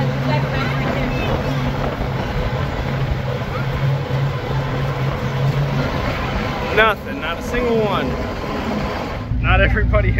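Engine of a large 4x4 monster-truck tour vehicle running at a steady cruise, heard from the passenger area as a steady low drone with wind and road noise. It breaks off abruptly about nine seconds in.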